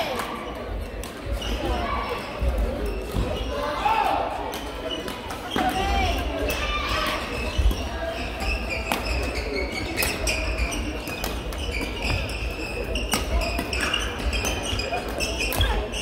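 Badminton rackets striking the shuttlecock in a doubles rally: several sharp hits a few seconds apart, echoing in a large sports hall.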